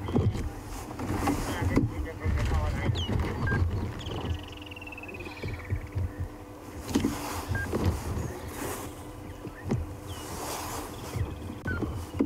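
Bushveld ambience: birds calling, including a quick falling series of rapid whistled notes about four seconds in and a few short chirps, over a low rumble with gusts of noise.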